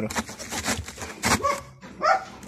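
Whole cabbage heads rustling and knocking against one another as they are pressed by hand into a plastic barrel, a few short rustles spread through the moment.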